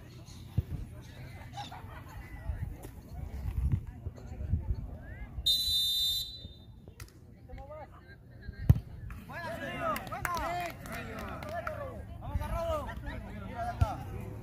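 A referee's whistle gives one short blast about five seconds in, and some three seconds later a penalty kick strikes the ball on a sand pitch with a single sharp thump, the loudest sound here. Voices call out right after the kick.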